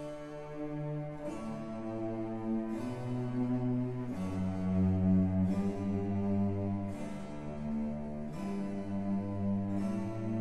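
Background music: a slow instrumental piece of sustained low chords that change about every second and a half.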